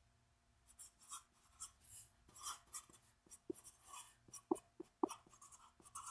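Sharpie felt-tip marker writing on paper: a faint, irregular run of short strokes and little squeaks as words are written out by hand, starting about a second in.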